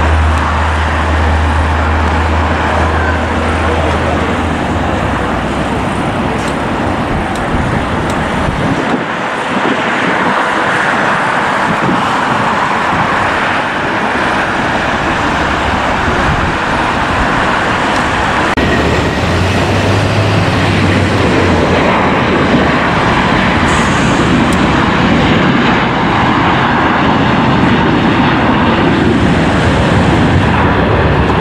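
Continuous, loud road traffic noise around an airport, with a deep engine hum from a heavy vehicle in the first few seconds and again about twenty seconds in.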